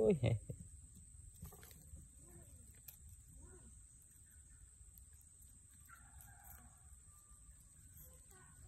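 A man's short exclamation right at the start, then a quiet outdoor background with a few faint ticks and a faint, distant call about six seconds in.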